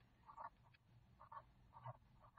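Near silence, with a few faint short scratches of a felt-tip pen writing digits on paper.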